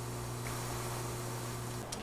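Quiet room tone: a steady low electrical hum with faint hiss, and a faint click near the end.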